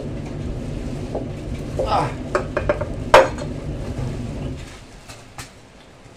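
Cleaver blade scraping scales off a large fish: a run of rasping scrapes and sharp clicks of metal on scales, the loudest a sharp knock a little past three seconds in. A low steady hum underneath fades out about four and a half seconds in.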